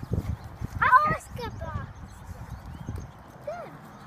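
Irregular soft thuds of two labradoodles scrambling and jumping on the grass close by, their paws landing in a quick uneven patter that fades out about three seconds in.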